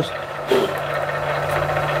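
Valve-seat cutting machine running steadily with a low hum as its two-blade cutter finishes machining the exhaust-seat pocket in a cylinder head.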